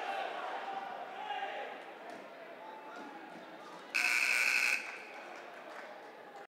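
Echoing gym din of players' voices with balls bouncing on the court; about four seconds in, a loud buzzer tone sounds for under a second.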